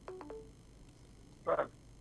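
A quick run of three short electronic tones, each held at a steady pitch, in the first half second, like telephone keypad tones. A brief voice sound follows about one and a half seconds in.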